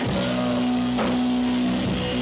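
Three-piece rock band playing live on electric guitar, bass guitar and drum kit in an instrumental passage. Held low chord notes ring throughout, with a sharp drum hit about a second in.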